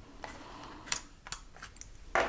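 Metal binder clips being unclipped from a stapled paper booklet and set down: a few light, separate clicks and ticks with some paper handling.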